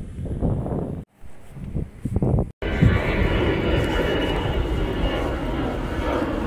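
Steady aircraft engine noise that starts abruptly about two and a half seconds in, after a brief dropout. Before it there is quieter, patchy outdoor sound.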